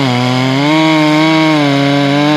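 Ported Stihl 461 chainsaw bucking a tamarack log, its engine under load in the cut. The engine pitch drops at the start, then holds fairly steady, wavering slightly as the chain cuts.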